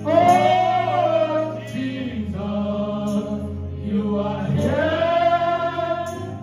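Gospel worship song sung by several voices through handheld microphones, with long held notes near the start and again near the end.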